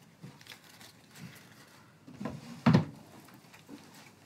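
Objects being handled on a wooden table: light rustling and small clicks, with one louder knock nearly three seconds in.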